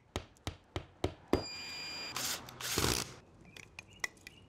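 Hand-tool work on a plastic security-camera mount: a quick run of sharp clicks and knocks, a brief high squeak, then two rasping scrapes of a screwdriver driving a screw into the mount on a stucco ceiling.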